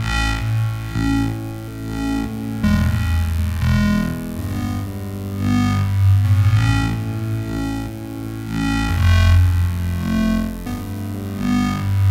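Heavyocity Gravity pad preset 'Concentric Teeth MW' played in Kontakt: sustained synth pad chords over a deep bass. The chord changes about two and a half seconds in and again about nine seconds in.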